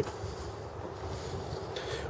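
Low, steady outdoor background noise with light wind on the microphone.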